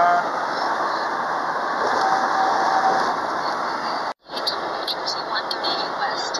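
Steady road and engine noise inside a moving car's cabin, with a steady tone lasting about a second from two seconds in. The sound cuts out briefly just after four seconds in.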